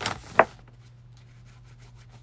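Paper towel rubbing over a paper-covered table top, then hands rubbing together as red paint is wiped off them, with one sharp tap about half a second in. The rubbing after the tap is faint.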